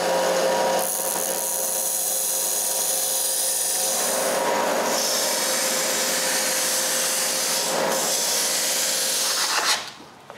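Mastercraft benchtop narrow-belt sander running steadily while the edges of a carved wooden plaque are pressed against the belt and sanded smooth. It cuts off near the end.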